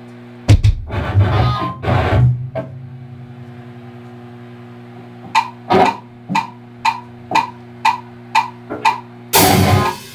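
A rock band's electric guitar and bass hit a loud chord about half a second in that dies away over about two seconds, over a steady amplifier hum. From about five seconds a steady count-in of clicks, about two a second, leads into the full band with drums coming in loud near the end.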